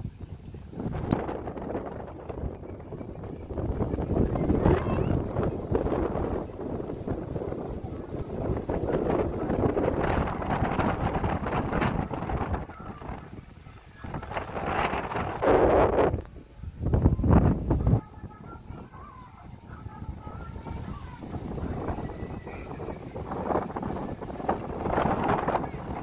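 Wind buffeting the microphone in uneven gusts, with a deep rumble, loudest in two strong blasts about fifteen and seventeen seconds in.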